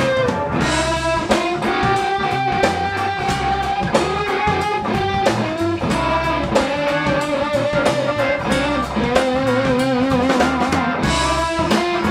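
Live blues-rock band jamming on one chord: electric guitar playing a lead of long held notes, some with vibrato, over drum kit, electric bass and Hammond organ.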